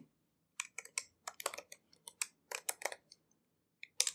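Typing on a computer keyboard: a brisk, uneven run of keystrokes starting about half a second in.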